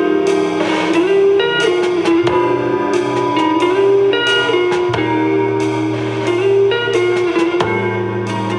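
Electric guitar playing an instrumental passage of sustained, melodic notes over a steady bass line and drums, with no singing.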